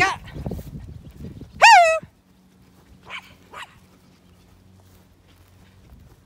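A dog barks once, loud and short with a falling pitch, about two seconds in, then gives two fainter yaps about a second later.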